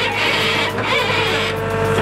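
Mini excavator's engine running with a steady hum and a hydraulic whine that steps up in pitch about halfway through, as the bucket digs into the soil.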